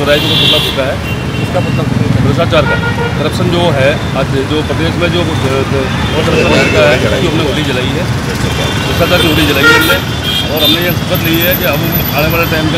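A man talking over steady road-traffic noise, with vehicle horns sounding now and then, most around the start and near the end.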